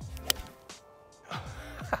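A single sharp click of a forged golf iron striking the ball, about a third of a second in, over background music.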